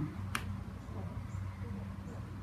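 A single sharp click about a third of a second in, over a faint, steady low hum.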